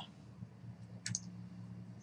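A single faint computer mouse click about a second in, over a faint steady low hum.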